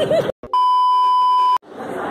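A censor bleep: a steady, pure tone of about one second, edited in with an abrupt start and stop to cover a word. Brief dead silence comes just before and after it.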